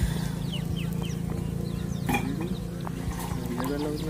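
Outdoor rural ambience: a steady low hum under many short, high bird chirps, with a few rising calls from about halfway through.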